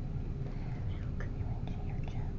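Children whispering softly over a steady low room hum.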